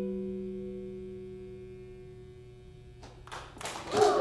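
Final electric guitar chord through a small amp ringing out and fading away steadily over about three seconds. A short burst of noise comes near the end.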